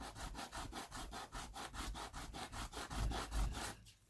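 A cast Jesmonite bar rubbed back and forth on sandpaper, sanding its end down to fit, in fast even rasping strokes about seven a second that stop shortly before the end.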